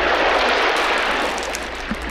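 A steady rushing noise with a low rumble under it, starting and cutting off abruptly; an edited-in transition sound over a cut between scenes.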